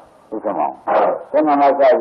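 Speech only: a man's voice preaching a Buddhist sermon in Burmese, after a brief pause at the start.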